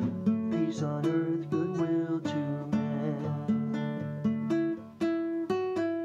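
Nylon-string classical guitar played solo: picked chords and melody notes, a few each second, in a slow, even tune.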